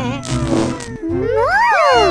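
Cartoon sound effects over background music: a falling whistle-like tone with a short hiss as the UFO's beam materialises a character, then several overlapping high glides that rise and fall, from about a second in.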